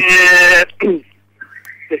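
A man's drawn-out hesitation sound, 'ehh', held at one pitch for about half a second, followed by a brief second vocal sound and a short pause.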